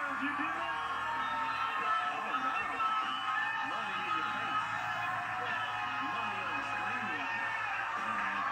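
Game-show studio band playing music while a man whoops and people cheer, heard through a television's speaker.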